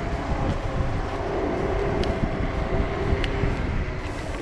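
Dual-motor 52 V Zero 10X electric scooter climbing a steep hill at full power: a steady rumble of wind and road noise with a faint, even motor whine.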